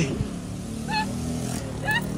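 Steady low hum of traffic, with two brief high-pitched calls, one about a second in and one near the end.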